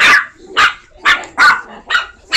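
Chihuahua barking: four short, sharp barks, unevenly spaced over two seconds.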